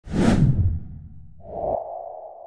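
Edited intro sound effect: a loud whoosh with a low hit at the start, fading out, then a sustained ringing tone that comes in about one and a half seconds in.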